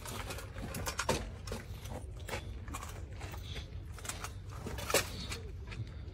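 Handling noise as the camera is moved about: scattered clicks, scrapes and rustles over a steady low rumble, with two sharper clicks, about a second in and about five seconds in.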